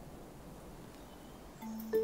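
Faint low background noise, then near the end soft background music comes in with held, bell-like mallet notes.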